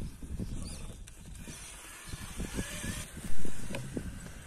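Axial Capra RC rock crawler working its way over granite: the motor and drivetrain run irregularly with crackling and creaking from the tyres and chassis on the rock. A short, loud burst stands out about three seconds in.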